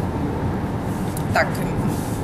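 Steady low rumble of road and engine noise from a moving car.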